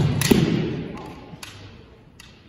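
Kendo exchange: two sharp cracks of bamboo shinai and a foot stamp thudding on the wooden gym floor, with a shout (kiai) that fades within about a second. The echo of the large hall lingers behind it.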